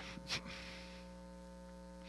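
Faint, steady electrical mains hum, with a short breath-like sound just after the start.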